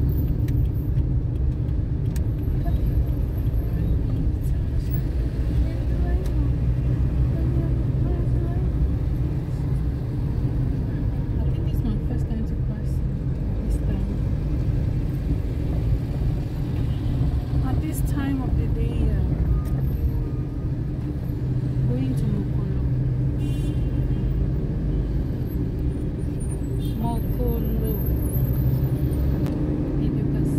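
Steady low rumble of a car's engine and tyres heard from inside the cabin while driving in town traffic, with indistinct voices talking underneath.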